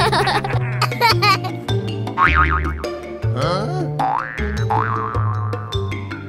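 Bouncy children's background music with a steady bass line, overlaid with a series of cartoon sound effects: wobbling boings and quick rising whistle-like glides.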